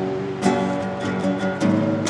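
Acoustic guitar strumming chords in a steady rhythm, about two strokes a second, accompanying a song.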